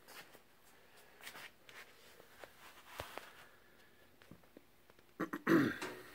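Faint scattered clicks and shuffles, then near the end a man's short throat-clearing sound.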